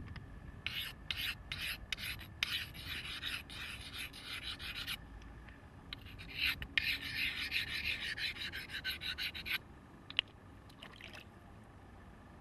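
A green stone axe blade being ground by hand on a wet boulder: rasping stone-on-stone strokes in two runs, separated by a short pause, with a few light knocks of stone after. This is the grinding that shapes a Neolithic polished stone axe.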